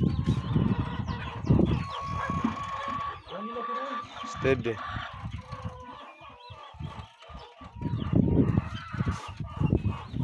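Chickens in the background, with a rooster crowing in one long held call from about two to five and a half seconds in. Bursts of rough low noise come near the start and again about eight seconds in.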